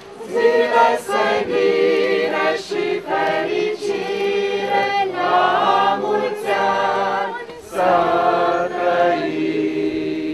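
A group of people singing a worship song together without accompaniment, in phrases with a brief breath pause about three-quarters of the way through.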